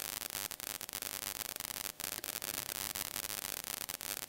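Steady low hiss of the recording's background noise with faint crackling clicks throughout, one a little more distinct about halfway through; no speech.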